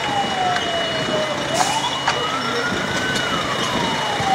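Fire engine siren wailing slowly: its pitch falls, climbs back up over about a second and a half, then falls again. A steady high tone runs beneath it.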